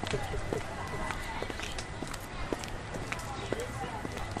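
Outdoor location sound: a steady background hiss with scattered light clicks and faint, indistinct voices.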